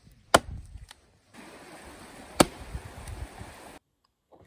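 Tuatahi camp axe chopping into wood: two sharp strikes about two seconds apart.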